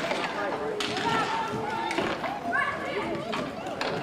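Indistinct raised voices of players and spectators calling out at a roller hockey game. A few sharp clacks of hockey sticks and puck on the rink floor come through, one about a second in.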